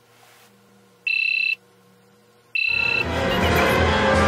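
Electronic alarm beeping twice, each a steady high beep of about half a second, about a second and a half apart. Music begins with the second beep and carries on.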